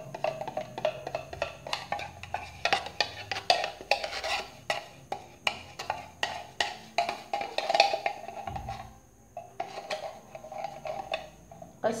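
A wire whisk beating cream by hand in a stainless steel bowl: quick, uneven clicks and scrapes of the wires against the metal, easing off briefly about nine seconds in.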